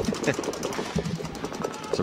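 Paintball markers firing during a match: a fast, continuous run of sharp pops, many per second.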